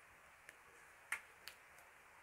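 A few short, faint clicks, four in all, the second, a little after a second in, the loudest, over a quiet room.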